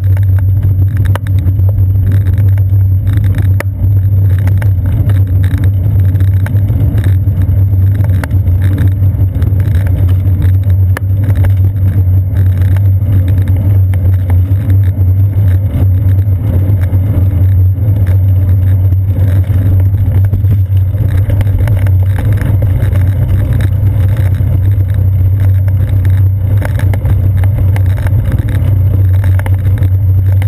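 Steady low rumble of wind buffeting and road vibration picked up through a seat-post-mounted GoPro camera on a moving bicycle, loud and unbroken.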